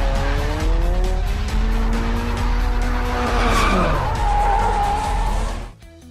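Car engine revving during a drift, its pitch gliding up and then falling, with tyre squeal about three and a half seconds in, over background music with a heavy bass. The sound cuts off shortly before the end.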